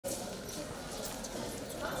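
Footsteps of several people walking on a concrete walkway, heard over a steady background hiss. A voice starts just at the end.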